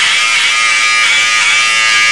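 Electric hair clippers running with a steady, high buzz, being used to trim the hair on a man's neck.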